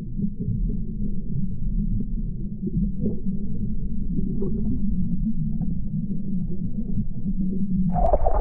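Underwater swimming-pool sound picked up by a submerged camera: a dull, muffled low rumble of churned water with faint bubbling as a swimmer glides along the bottom just after a dive.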